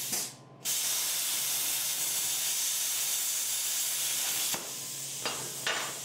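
A steady, even hiss of a gas or air jet that starts abruptly about half a second in and cuts off suddenly before the five-second mark, over a faint low hum; a couple of short clicks follow.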